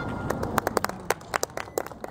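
Sparse applause from a small audience: a handful of separate, irregular hand claps, beginning about a third of a second in.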